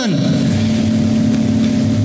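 A steady, unchanging drone: a constant low hum with an even hiss over it, holding the same level throughout. This is the room's or the recording's background noise in a pause between spoken sentences.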